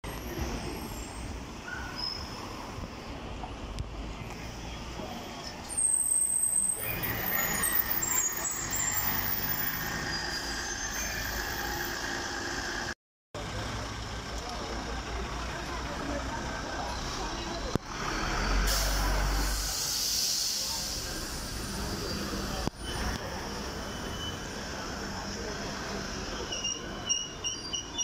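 City buses and a trolleybus in street traffic, with a high-pitched brake squeal about six seconds in and a loud hiss of compressed air about two-thirds of the way through.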